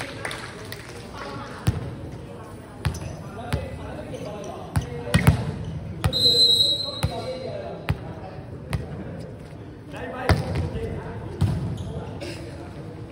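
A volleyball bouncing off the hard court floor, sharp knocks at irregular intervals, and a short referee's whistle blast about six seconds in. Players' voices carry in the large hall.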